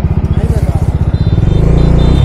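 Bajaj Dominar 400's single-cylinder engine under way, heard close from the rider, its exhaust pulsing rapidly and evenly; about one and a half seconds in the engine gets louder as more throttle is given.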